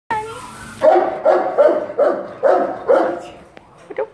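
A dog in a kennel barking: a short sliding whine, then six quick barks in a steady run about two and a half a second, dying away near the end.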